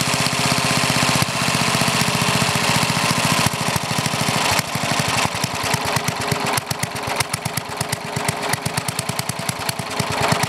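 Old Briggs and Stratton single-cylinder engine with a one-piece Flo-Jet carburetor, running steadily at first, then turning uneven and irregular from about halfway through as the main (high-side) mixture screw is set lean.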